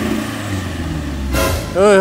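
Pickup truck engine running with a low, steady drone. About a second and a half in there is a brief sharp burst of noise, and right at the end a man shouts "hey!"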